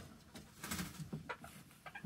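Chickens clucking softly and faintly, a few short low calls in the middle.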